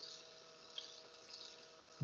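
Near silence: faint room tone with a steady low hum and a couple of tiny ticks.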